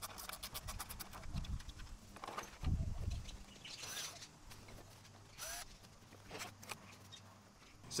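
Small metallic clicks and rattles from a cordless drill and the end fittings of an awning roller tube being handled, with a dull thump about three seconds in.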